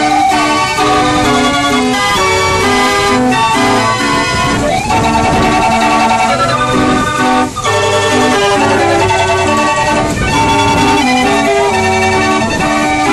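Hand-cranked mechanical street organ playing a tune from folded book music: pipe chords over a steady bass line, with the notes changing step by step.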